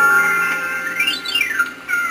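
Cartoon ident soundtrack played backwards: a held whistle-like tone, then a pitch glide rising and another falling, crossing about a second in, like a slide whistle, over music.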